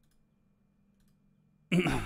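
Near silence with a faint low hum and a few faint clicks, then a man starts speaking near the end.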